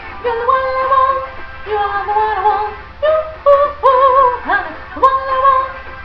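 A woman singing a pop melody in short phrases of held notes with vibrato, with an upward slide about four and a half seconds in.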